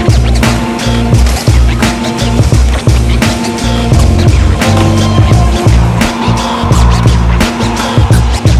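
Bass-heavy music with a steady beat over skateboards: urethane wheels rolling on a concrete floor and sharp clacks of boards popping and landing.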